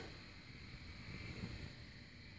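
Faint low rumble of background room noise, with no distinct events.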